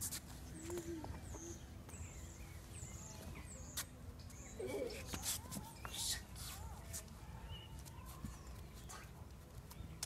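A small bird giving a run of short, high, falling chirps, spaced about half a second apart, over a low steady outdoor rumble, with a few sharp clicks later on.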